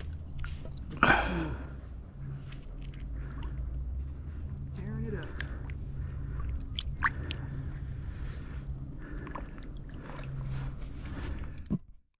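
Water sloshing and dripping around a landing net as a lightning trout is held in the shallows and let go, over a steady low rumble. A short voice-like sound comes about a second in, and the sound cuts off at the end.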